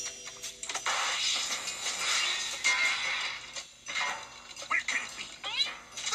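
Cartoon soundtrack of music and sound effects, with short wavering, pitched cries near the end.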